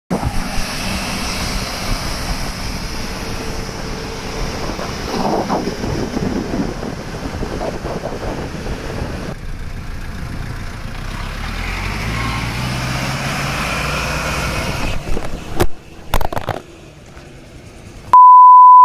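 Custom open-top off-road jeep driving past, its engine running with road and wind noise; the engine note rises about twelve seconds in as it pulls away. A few sharp knocks come near the end, then it falls quieter.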